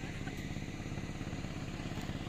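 A small engine running steadily with a fast, even pulse, like a motorcycle idling.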